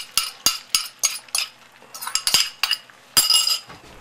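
A metal utensil clinking against a bowl in a run of quick, ringing strikes, about four a second at first. After a short pause come a few more, with the loudest and longest ring near the end.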